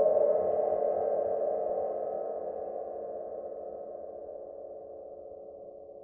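A single bell-like ringing note, struck suddenly and left to ring, fading slowly for six seconds until it is cut off at the end.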